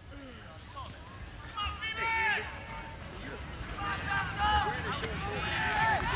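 Voices shouting and calling out on a soccer pitch, over a steady low outdoor rumble. One spell of shouts comes about two seconds in, and another starts about four seconds in and runs on.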